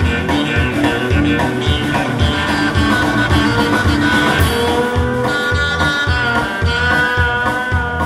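Live blues band playing an instrumental passage: a Stratocaster-style electric guitar over bass and a steady drum beat of about two beats a second, the guitar holding long sustained notes in the second half.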